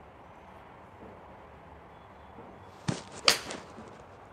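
A Callaway XR Pro iron striking a golf ball: a sharp click about three seconds in, followed a moment later by a louder smack as the ball hits the simulator screen.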